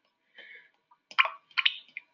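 A few faint glassy clinks, the sharpest about a second in and another half a second later, as a glass stirring rod knocks against a small glass beaker while the solution is mixed.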